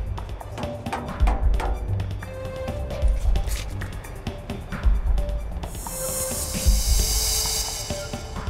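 Dramatic film background music: a slow, heavy drum beat about every two seconds under sustained notes, with a bright hissing swell over the last two seconds.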